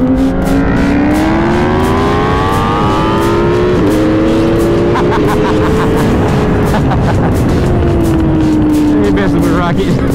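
Suzuki GSX-R1000R inline-four under hard acceleration at high speed: the revs climb over the first four seconds with two quick dips at upshifts, hold, then fall away over the last three seconds as the throttle comes off. Heavy wind rush runs under the engine.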